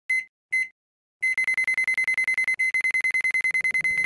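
Electronic countdown-timer beeps, all at one high pitch. Two short beeps come first, then a brief pause. About a second in, a fast, even run of beeps starts at roughly ten a second.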